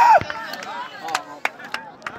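A held high-pitched shout that ends just after the start, then a handful of sharp, irregular knocks over faint distant voices.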